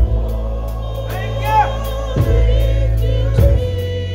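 Gospel music: sustained chords on a Korg keyboard with light cymbal taps from a drum kit and singing over them. The chords change twice, about two seconds in and again near three and a half seconds.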